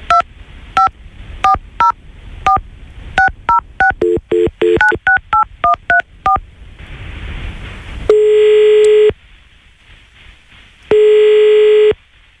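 A phone being dialled: a quick run of touch-tone keypad beeps through the first six seconds, then a short hiss on the line and two long ringback tones of about a second each, about three seconds apart, as the call rings through.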